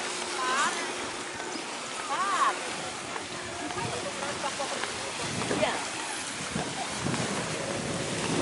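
Busy beach ambience: other people's voices over a steady hiss of wind and gentle surf, with two short high calls about half a second and two seconds in.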